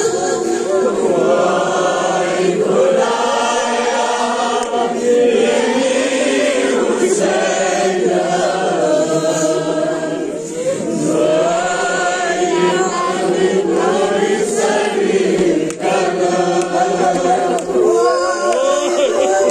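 A boy leads a noha, a Shia mourning lament, singing into a microphone, while a group of men chant along with him in chorus.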